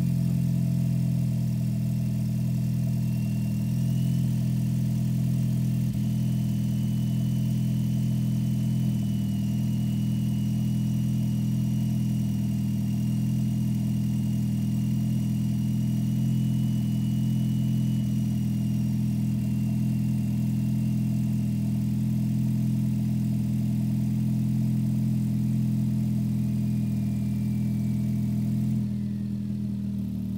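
Turbocharged Ford Focus ST's 2.0 EcoBoost four-cylinder with an MBRP exhaust, idling steadily with the car standing still, heard from inside the cabin.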